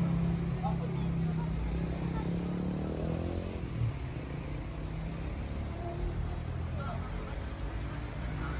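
A motor vehicle's engine running at idle: a steady low hum that eases off about three seconds in and goes on as a low rumble, with faint voices around it.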